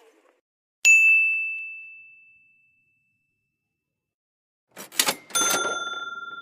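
Editing sound-effect chimes: a bright ding about a second in that rings out and fades over two seconds. Near the end come a few quick clicks and then a second, lower bell ding that keeps ringing.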